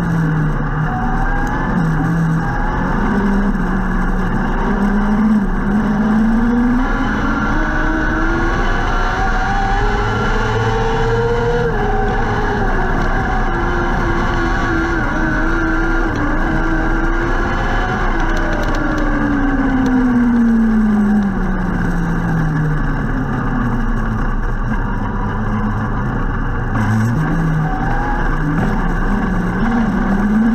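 A restricted micro sprint car's motorcycle engine running, heard from the cockpit. Its pitch climbs slowly over the first ten seconds, holds, falls off about two-thirds of the way through, and picks up again near the end.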